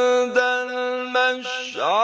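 A male reciter chanting the Quran in melodic tajwid style, holding a long, steady note. Near the end the voice makes a swooping dip and rise in pitch.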